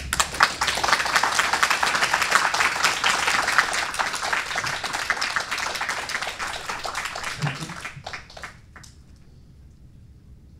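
Audience applauding: dense clapping starts at once, is loudest in the first few seconds, and dies away after about eight seconds, leaving a few last claps.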